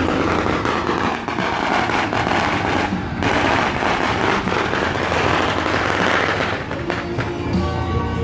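A long string of firecrackers going off in a continuous rapid crackle, with procession music underneath.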